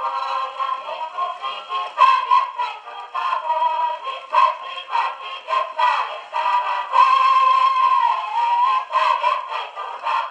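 Music from an old shellac record on a wind-up gramophone, thin and tinny with no bass, a wavering melody line carrying it.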